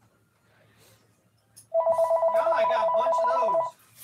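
Telephone ringing with one electronic warbling ring about two seconds long, starting a little under two seconds in: an incoming call.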